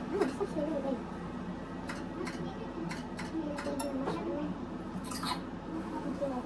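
Faint, indistinct speech in the background. From about two seconds in there are several short, sharp clicks.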